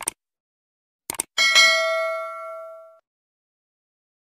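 Subscribe-button sound effect: a short click, then a quick double click about a second in, followed by a bright notification-bell ding that rings for about a second and a half and fades away.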